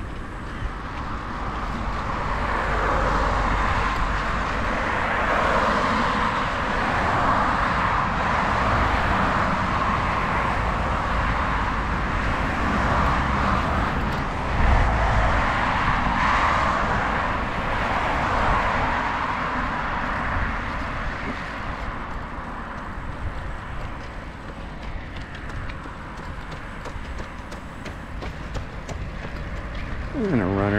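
Continuous rushing noise of riding a bicycle along a paved path, with wind on the microphone and tyre noise, and road traffic passing alongside. It swells and eases several times in the first twenty seconds, then settles a little quieter.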